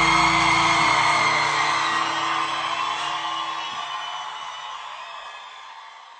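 A live band with acoustic guitars holding its last chord while the audience cheers and whoops. The held notes stop about four seconds in and the whole sound fades out.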